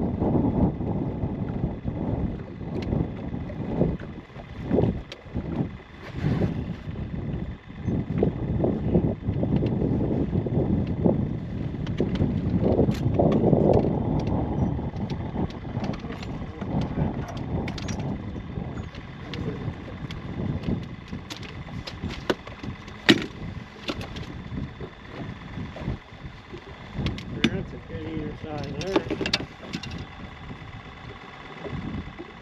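Wind buffeting the microphone as a gusty low rumble, with scattered knocks and clicks of handling.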